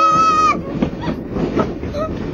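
Cartoon sound effect of a train running along its rails with a clattering of wheels, opening with a short, high, steady tone about half a second long.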